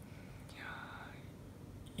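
A faint, soft breath between spoken phrases, about half a second to a second in, over quiet room tone.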